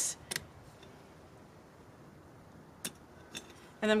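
Scissors snipping an oil lamp's blackened wick: a sharp click just after the start and two more near the end, over faint background hiss.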